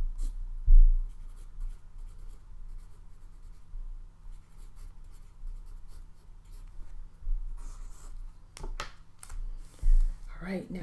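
Paper being handled on a desk: soft rustles, light scrapes and small clicks, with two dull low thumps, the loudest about a second in and another near the end.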